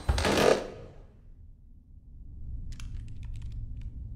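Trailer sound design: a loud whoosh-like hit at the start that dies away within about a second. A low rumbling drone follows, and near the end comes a quick run of about ten small, sharp clicks.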